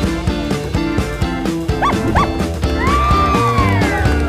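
Upbeat jingle music with a steady beat, carrying cartoon sound effects: two short rising-and-falling squeaks about two seconds in, then a long sliding tone that falls away near the end.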